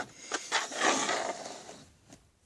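A hand scraping and rustling against a cardboard shipping case, with a light tick about a third of a second in, fading out near the end.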